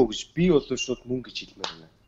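Speech only: a person talking in short phrases.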